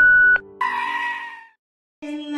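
A steady high-pitched test-card beep tone that cuts off sharply less than half a second in, followed by a wavering, sheep-like bleat lasting about a second.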